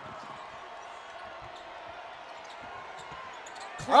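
Broadcast arena sound of a basketball game: a steady crowd murmur with a ball being dribbled on the hardwood court, heard as faint, irregular low knocks.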